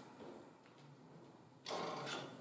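Marker pen scratching on flip-chart paper: faint strokes, then a louder scrape about a second and a half in.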